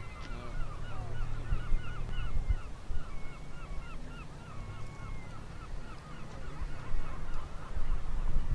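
Birds calling in rapid series of short hooked notes, about five a second, with a few longer drawn-out calls among them, over a low rumble.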